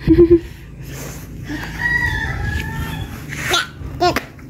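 A rooster crowing once: a long call from about a second and a half in, lasting over a second. A short loud knock with a brief voice-like sound comes right at the start.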